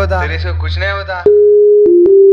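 A loud, steady electronic synthesizer tone starts about a second in, stepping slightly lower in pitch with a click near the end: the opening notes of the rap track's beat.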